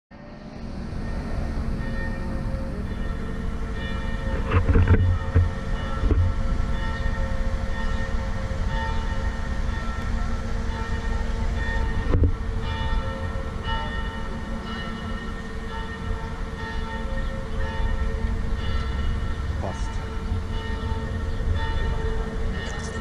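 Aerial ladder's hydraulic drive running steadily with a whine as it moves up to a rooftop nest, over a low rumble, with a few knocks about five and twelve seconds in.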